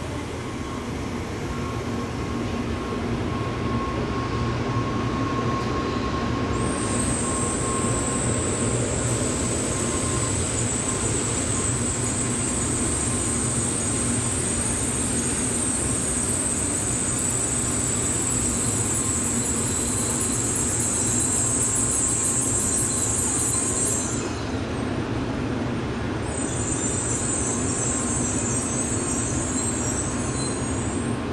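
N700A Shinkansen train rolling slowly in along the platform as it arrives, with a steady rumble of wheels on rail. A high-pitched squeal sets in about seven seconds in, breaks off at about twenty-four seconds, and comes back near the end.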